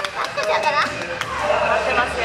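Young women's excited, high-pitched voices with a few hand claps.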